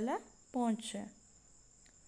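A woman speaking briefly, then a pause in which a steady faint high-pitched whine carries on alone, with one small click near the end.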